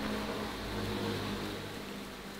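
An engine running steadily, a low hum that swells slightly and then eases off.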